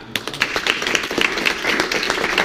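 Hand clapping from a few people, a dense patter of claps that starts abruptly just after the start and carries on steadily.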